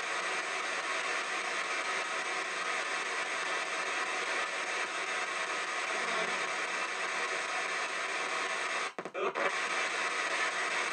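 PSB-7 spirit box sweeping through radio frequencies in reverse, played through stereo speakers as a steady hiss of radio static. It briefly cuts out about nine seconds in.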